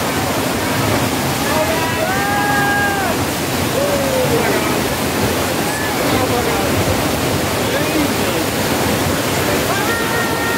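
A staged flood on a subway station film set: a torrent of water pouring down and surging across the floor in a loud, steady rush that does not let up.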